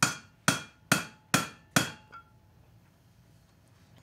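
Hammer striking a horseshoe on an anvil five times, about two blows a second, each with a short metallic ring. The blows are shaping the shoe cold. A faint tap follows, then the hammering stops.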